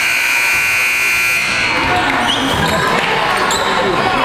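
Gymnasium buzzer sounding one steady, shrill blast for about a second and a half. After it come shoe squeaks on the court floor and voices in the hall.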